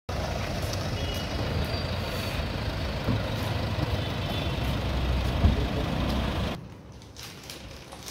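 Steady running of vehicle engines with street traffic, a continuous low rumble. It cuts off abruptly about six and a half seconds in, giving way to a much quieter room.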